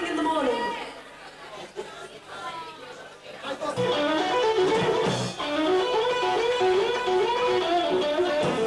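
A voice trails off, then after a short lull an amplified electric guitar starts a song about four seconds in, playing a short riff that repeats over and over, with a few low bass notes under it.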